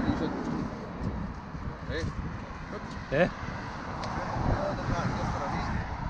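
Steady outdoor rumble of wind on the camera microphone mixed with road traffic.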